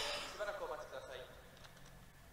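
A faint voice for about the first second, then a low steady hum, close to near silence.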